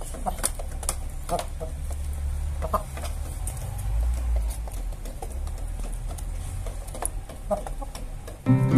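Índio Gigante chickens pecking feed from a PVC pipe trough, their beaks tapping the plastic in irregular sharp clicks, with a few short clucks. A low rumble runs underneath.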